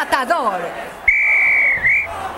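A referee's whistle gives one long blast of about a second on a single high pitch, warbling briefly just before it stops.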